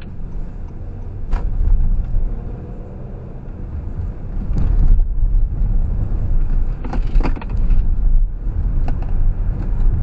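Car driving, heard from inside the cabin: a steady low rumble of engine and road noise that grows louder as the car picks up speed, with a few short knocks or rattles.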